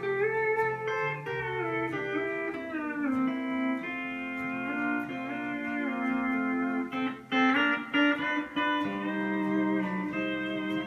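Jackson Pro V aluminum pedal steel guitar being played. Held chords slide and bend in pitch, and there is a quick run of picked notes about seven seconds in.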